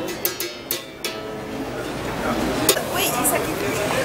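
Berimbau, the gourd-resonated musical bow, struck with its stick a few times in quick succession near the start. The wire then rings out in a twanging note that fades after about a second.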